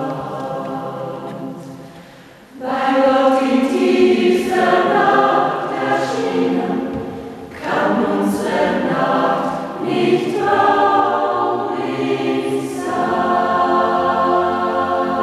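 Mixed choir of men and women singing a hymn a cappella. A held chord fades away, then a new phrase comes in strongly about two and a half seconds in. The singing dips briefly about halfway through and picks up again.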